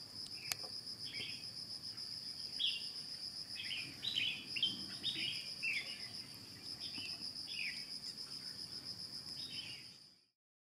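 A continuous high, finely pulsed insect trill, with a dozen or so short, falling bird chirps scattered over it. The sound fades out at the very end.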